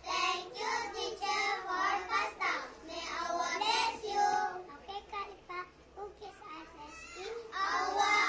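A group of young children reciting a choral-speaking piece together in unison, in a sing-song, half-chanted delivery. The voices are loud at first, drop off for a few seconds past the middle, and come back loud near the end.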